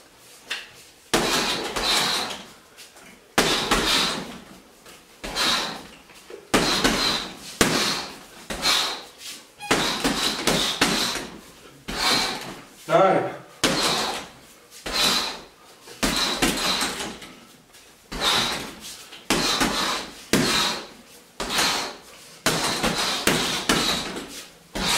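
Boxing-gloved punches and knee strikes landing on a hanging heavy bag, about one every second and a half, each with a sharp hissing exhale. There is a short voiced grunt about halfway through.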